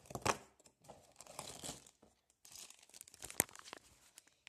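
Cardboard door of an advent calendar being pushed and torn open along its perforation: crinkling and tearing, with a few sharp cracks.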